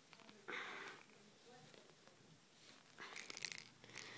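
Faint handling noise of a small plastic survival whistle being twisted and pried at: a short scratchy rustle about half a second in and light rustling and clicks near the end. The whistle's compartment is stuck and does not open.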